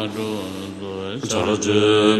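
Low male voices chanting a Tibetan Buddhist prayer in a sustained recitation tone. The chanting eases off, and a new, louder phrase begins a little over a second in.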